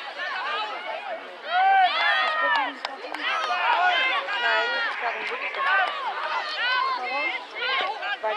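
Many young voices shouting and calling over one another, high-pitched and overlapping, with the loudest shouts about two seconds in.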